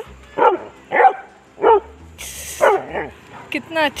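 Dog giving short excited yips and barks, about five in a row roughly a second apart, while greeting another dog.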